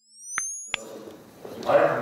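Channel logo sting: a few pure tones gliding upward together, with a short pop, cut off by a click a little under a second in. Then room sound with men's voices, louder toward the end.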